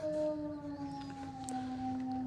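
Dog howling: one long held note, slowly falling in pitch.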